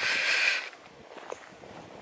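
A short audible breath, about half a second of hiss, followed by quiet footsteps on the track.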